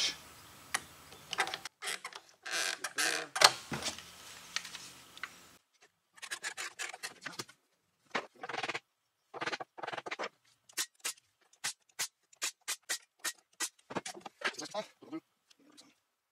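Workshop handling sounds: wood pieces and hand tools knocked and set down on a plywood workbench, with a loud knock about three and a half seconds in. In the second half there is a run of short sharp clicks and taps, about three a second.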